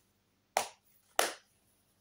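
Two short clicks, a little over half a second apart, from a plastic DVD case being handled and turned over in the hands.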